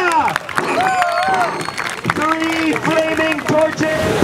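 A high, drawn-out voice cry that rises and falls in pitch about a second in, then a run of short repeated cries from about halfway through, much like the performer's shouts of "oh yeah".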